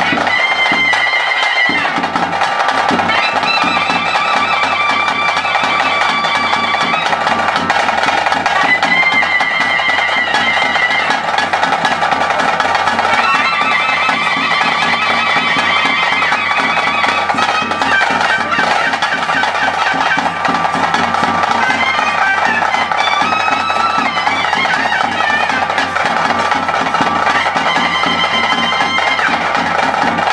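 Traditional ritual music: a double-reed pipe plays a wavering, ornamented melody over a steady drone, while drums keep up a regular beat.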